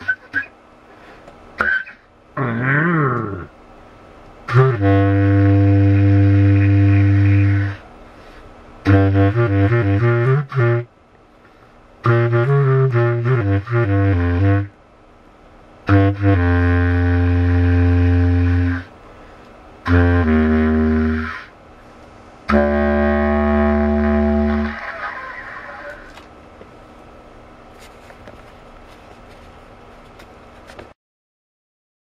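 Improvised playing on a low single-reed woodwind: a wavering, sliding phrase, then a run of long held low notes, some broken by fast trills between two pitches, each phrase separated by short pauses. After the last phrase the playing dies away to quiet.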